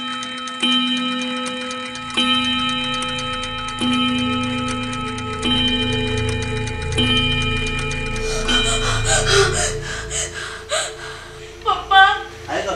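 A pendulum wall clock strikes the hour, one ringing chime about every second and a half, each left to ring on over a light ticking. In the last few seconds a woman's voice takes over in short, uneven sounds.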